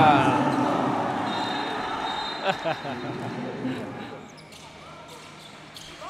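Basketball being bounced on a hardwood court, a few sharp knocks about halfway through, under a fading arena din. A commentator's excited call trails off at the start.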